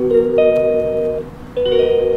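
Instrumental background music, held chords played on a keyboard-like instrument, with no singing. The chord dies away about a second in and a new one starts shortly before the end.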